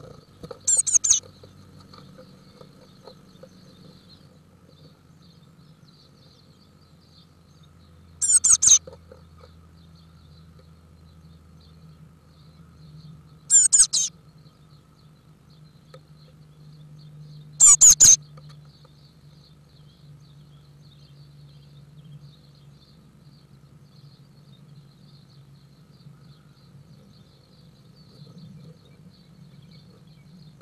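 Blue tit nestlings in a nest box giving four short, very high-pitched begging bursts of rapid cheeps, spaced several seconds apart, over a faint steady electrical hum from the nest-box camera.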